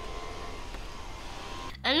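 Toy hovercraft's small electric fan motors running with a steady hum and faint high whine, which cuts off abruptly near the end.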